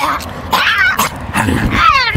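A person's voice making high-pitched, dog-like yelps and whimpers: several short cries that slide up and down in pitch, ending in a falling whine.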